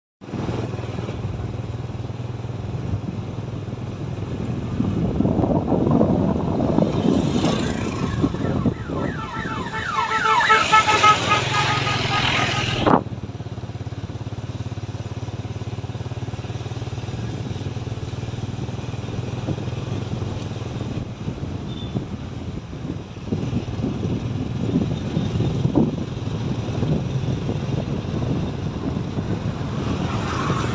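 Motor vehicle engine sound with a steady low hum. Near the middle an engine note rises in pitch for several seconds, as a vehicle accelerates, then cuts off suddenly.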